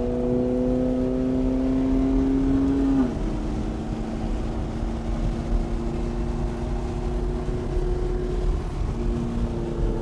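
McLaren MP4-12C's twin-turbo V8 heard from inside the cabin on a hot lap. The engine pulls with its pitch rising slowly, then drops suddenly at a quick upshift about three seconds in and holds a steady, lower note.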